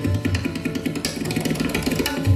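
Sitar and tabla playing together: the sitar in rapid plucked strokes over the tabla, whose deep bass strokes sound mostly in the first half second.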